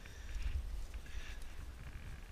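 Low rumble of wind buffeting the microphone of a climber's helmet-mounted camera, with two brief, fainter higher-pitched sounds about half a second and a second and a quarter in.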